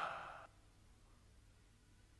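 A short, faint breathy exhale like a sigh, fading out within the first half second, then near silence.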